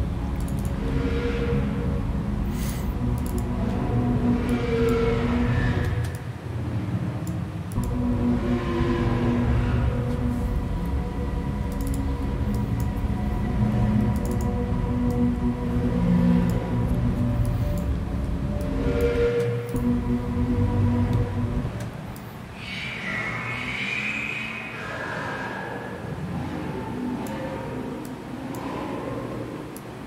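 Electronic music playing back from a DAW session: sustained synth tones over a heavy bass. About 22 seconds in the bass drops out, leaving higher synth notes that bend in pitch.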